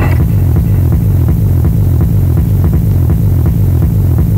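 Rave DJ mix from a 1994 cassette recording: a stripped-back passage of heavy, pulsing bass with light, evenly spaced percussion ticks above it.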